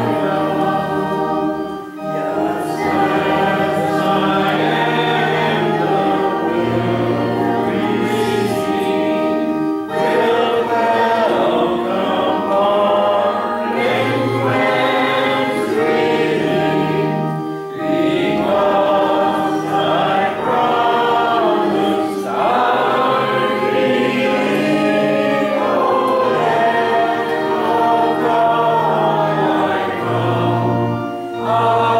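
A church congregation singing a hymn together, phrase by phrase with short breaks between lines, over an accompaniment holding long, steady low notes.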